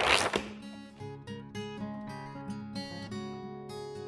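Background music of an acoustic guitar, single plucked notes ringing over a low held note, with a brief burst of noise right at the start.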